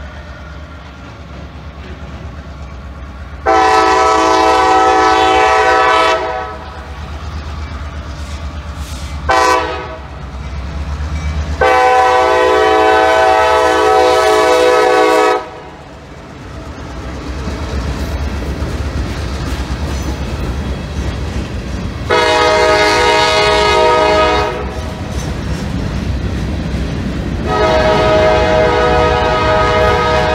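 Diesel locomotive air horn sounding for a grade crossing: five blasts, long, short, long, then two more long, the last running past the end. Beneath them the locomotive's engine rumbles and the train runs steadily over the rails, growing louder as the engine passes and the cars follow.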